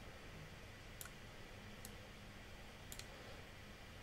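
Three faint computer mouse clicks, spaced about a second apart, over quiet room tone.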